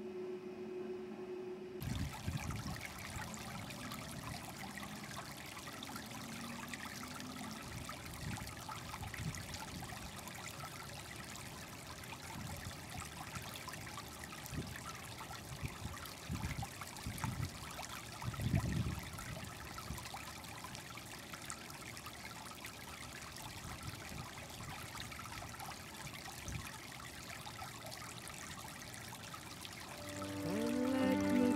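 A low steady room hum for about two seconds, then a steady outdoor hiss with a few brief low rumbles of wind on the microphone.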